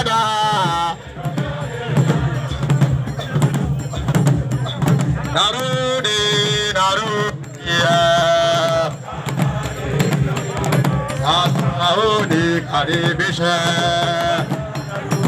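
Group singing of a chant with drums and percussion keeping a beat under it, the voices holding long notes now and then.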